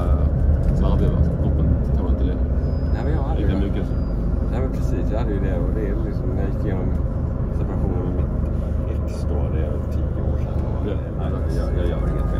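Rail-replacement bus engine running with a steady low drone heard from inside the passenger cabin, with indistinct passenger voices talking over it.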